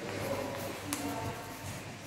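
Quiet handling of a sheet of paper being folded and pressed into a crease by hand on a table, with a small tap about a second in.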